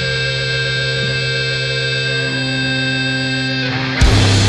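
Doom metal track: distorted electric guitar holding a sustained, ringing chord. It cuts off just before the end.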